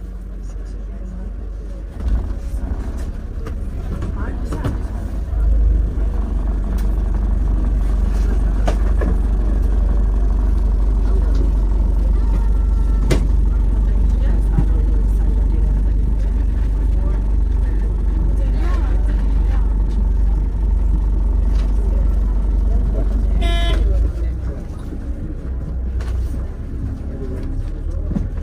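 Double-decker bus running in city traffic, heard from the top deck as a loud, steady low rumble. A vehicle horn toots briefly near the end.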